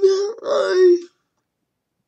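A young woman with cerebral palsy speaking with dysarthric speech: one drawn-out, effortful utterance lasting about a second.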